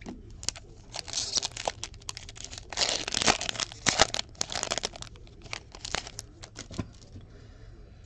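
Foil wrapper of a Fleer Showcase hockey card pack being torn open and crinkled. The tearing is loudest about three to four seconds in and is followed by lighter rustling clicks as the cards are handled.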